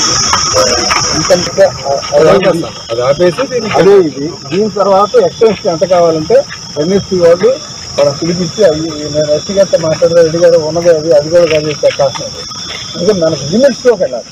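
A steady high-pitched insect drone of crickets or cicadas, strongest in the first few seconds, under men talking close by.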